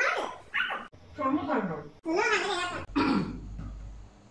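Voices laughing and calling out in several short loud bursts, broken by abrupt cut-offs about one and two seconds in.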